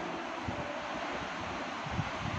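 Steady background hiss of the recording with an uneven low rumble, with no speech over it.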